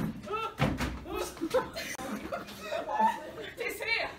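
Several voices talking and laughing, with a sharp thump right at the start and a duller knock about half a second later.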